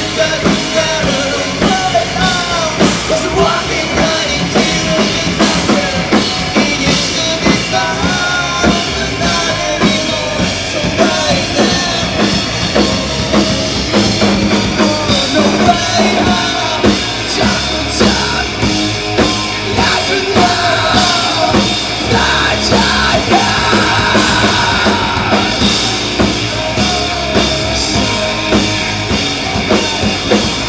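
A live rock band playing loud and without a break: drum kit, electric guitars through Marshall amplifiers, and a singer on the microphone.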